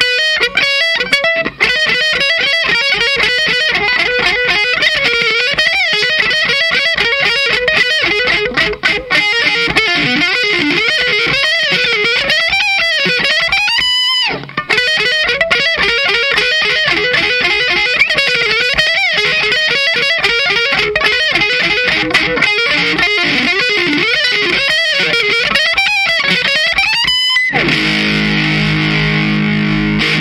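Distorted electric guitar, a Fender Stratocaster, playing fast neoclassical shred arpeggio runs that sweep up and down in pitch. About halfway through it stops briefly on a held, wavering high note, and it ends on a long ringing note that is cut off.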